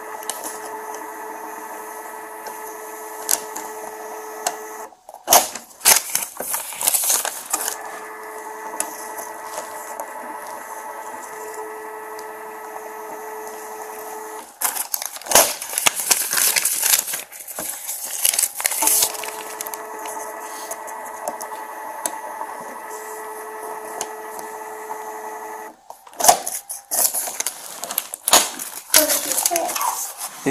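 A steady machine hum holding several fixed tones, broken three times, about 5, 15 and 26 seconds in, by a few seconds of clatter and handling noise.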